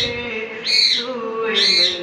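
A man singing a long, slowly wavering held note into a handheld microphone. A short high chirp, rising then falling, repeats about once a second over the voice.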